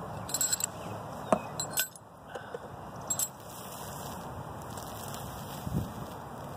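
Handling noise close to the microphone: several light clicks and clinks in the first three seconds or so, then a steady faint outdoor background.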